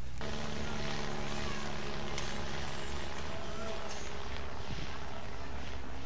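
A steady engine drone with a low hum held at several fixed pitches, starting abruptly just after the start and running on unchanged.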